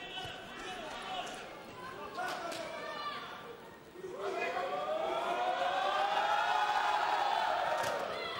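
Boxing arena crowd: scattered voices at first, then about four seconds in many voices rise together into a loud, sustained shout that holds to the end.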